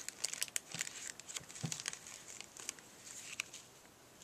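Cellophane craft packaging crinkling in short, scattered crackles as hands handle small stick-on embellishments.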